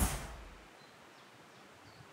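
A whoosh with a low rumble, peaking right at the start and fading out within about half a second. After it comes faint outdoor background with a couple of faint high chirps.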